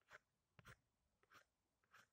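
Faint pencil strokes scratching on paper: four short strokes, about one every half second, as a figure is drawn.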